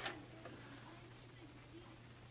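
Sony PS-LX300USB belt-drive turntable running faintly with its platter spinning on a freshly fitted belt, just after a sharp click at the very start; a low steady hum and faint light ticks underneath.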